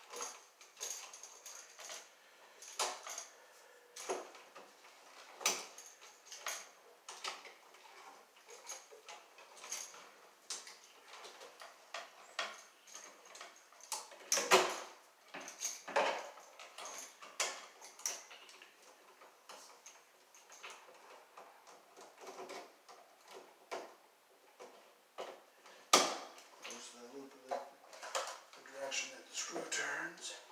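Irregular clicks, taps and scrapes of hand tools, pliers and a screwdriver, working solid wire and terminal screws on an electrical receptacle in a wall box. Two louder knocks come about halfway through and near the end.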